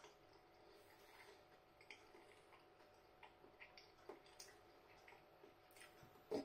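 Near silence, with faint, irregular small clicks of a mouthful of pizza being chewed with the mouth closed.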